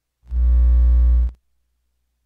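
A loud, steady, low buzzing tone with many overtones, about a second long, that starts and stops abruptly.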